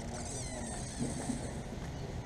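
Small caged birds chirping and twittering, high and thin, dying away after about a second and a half, over a steady low background hum.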